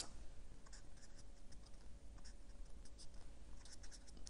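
Felt-tip board marker writing numbers on a white sheet: faint, irregular short scratching strokes.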